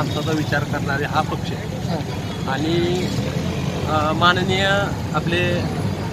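A man's voice speaking into a handheld microphone in short phrases with brief pauses, over a steady low background rumble.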